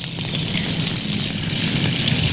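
A chicken burger patty sizzling on a hot, oiled, ridged grill pan just after it has been laid down: a steady, bright hiss.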